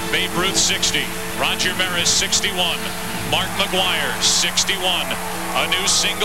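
Talking voices, with sibilant 's' sounds, over a steady humming background tone from an old broadcast recording.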